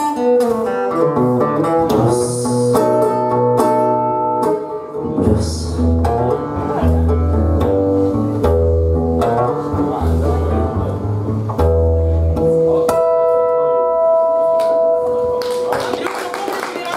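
Acoustic guitar playing a blues instrumental passage, picked melody notes over low bass notes, closing on a final chord left ringing for the last three seconds or so.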